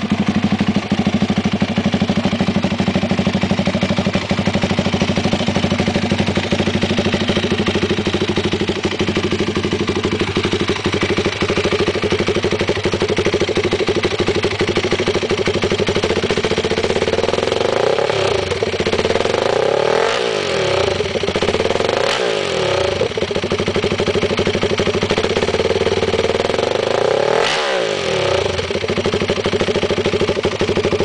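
Yamaha YFZ450's single-cylinder four-stroke engine, freshly installed, running through an NMotion full aftermarket exhaust system. It idles steadily for about half the time, then gets a few short, quick throttle blips in the second half, each rising and dropping straight back to idle.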